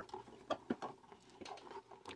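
Faint scratching and a few small clicks, bunched about half a second to a second in, as a fingertip works open a cardboard advent-calendar door and takes out a small LEGO build.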